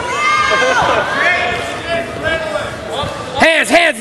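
Shouting voices during a wrestling bout: a long drawn-out yell that rises in pitch in the first second or so, then quick shouted coaching words near the end.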